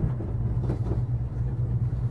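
Gondola cabin rumbling as it passes over the lift tower's sheaves, with a few faint clacks in the first second.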